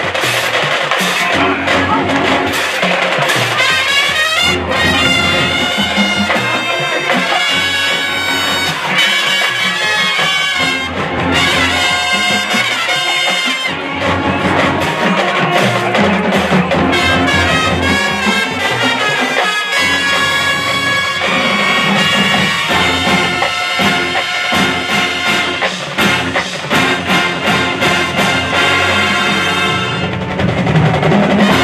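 Marching band playing, brass carrying the tune over a drum beat that is most distinct in the last several seconds.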